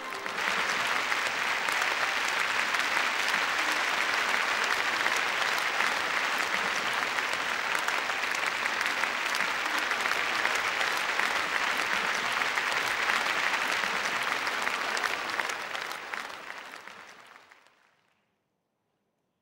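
Audience applauding, a steady dense clatter of many hands that fades away over the last couple of seconds.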